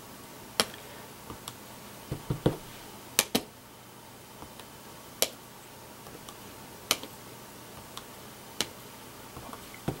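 Small wooden-handled rubber stamp being inked and pressed onto paper: separate sharp taps every second or two, with a cluster of duller knocks about two seconds in.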